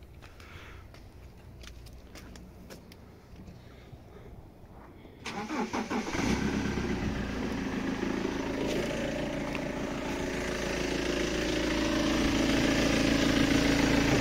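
2007 BMW 320d's four-cylinder diesel engine starting about five seconds in: about a second of cranking, then it catches and settles into a steady idle that grows louder toward the end. It is the engine that is loud with its airbox not attached, running with the intake pipe wrapped in cling film to test whether that quiets it, and it sounds no quieter.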